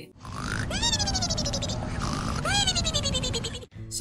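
Cartoon-style snoring sound effect: a rasping, rumbling snore, with a high whistle falling in pitch on each of two breaths.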